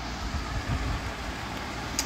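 Steady low rumbling background noise with an even hiss and no distinct events.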